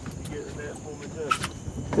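Faint, distant men's voices talking, with a short laugh at the very end.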